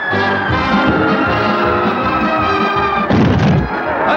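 Orchestral cartoon score playing, with one high tone sliding slowly downward in pitch. A heavy thud comes about three seconds in.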